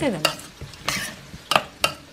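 Metal spoon stirring a moist mixture of chopped vegetables and spices in a stainless steel bowl: soft scraping and squelching, with three sharp clinks of spoon on steel in the second half.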